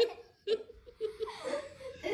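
A child laughing in a few short bursts with pauses between.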